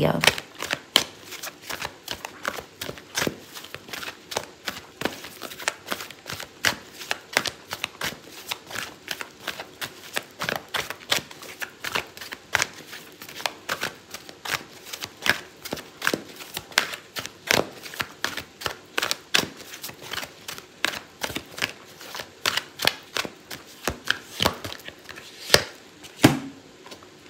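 A deck of oracle cards being shuffled by hand: a steady run of quick, irregular card slaps and flicks, about two to three a second, going on throughout.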